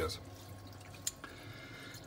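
Faint trickle and drip of water in a reef aquarium's sump under the tank, with a single short click about a second in.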